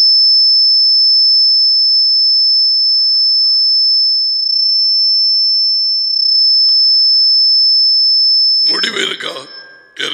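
A loud, steady, high-pitched electronic tone holds unbroken for about nine seconds, then stops near the end as a man's voice comes back.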